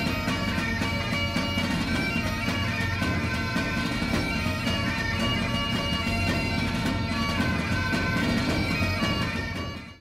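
Bagpipe music: a melody played over steady drones, fading out at the very end.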